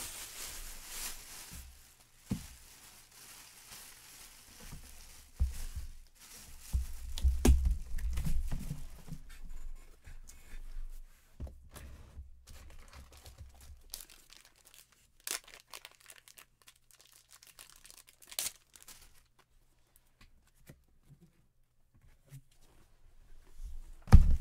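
Handling noise: irregular crinkling and tearing of paper or packaging, with scattered clicks and a few low thumps, loudest a few seconds in and dying down near the end.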